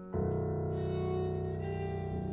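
Violin and piano playing together in long held notes. A fuller chord comes in sharply just after the start, and the notes change again near the end.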